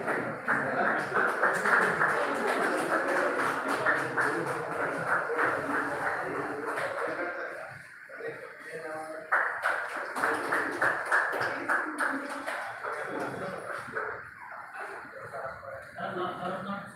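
Indistinct talking of people nearby, several voices, with a brief lull about eight seconds in.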